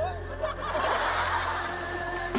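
Studio audience laughing, a dense wash of many voices that swells about half a second in, with steady background music underneath.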